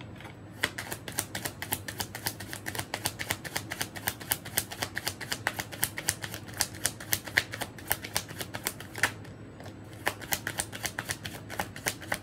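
A large deck of tarot cards being shuffled by hand: a quick, steady run of papery card clicks, several a second. There is a short break about nine seconds in before the shuffling picks up again.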